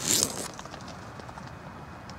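A brief rustle of nylon tent fabric in the first half second as the tent is entered, then only a faint steady hiss with a few small ticks.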